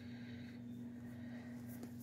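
A low steady hum with a faint rustle of cotton fabric being handled and folded near the end.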